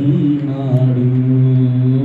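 A man singing one long held note of a Telugu devotional song, steady in pitch.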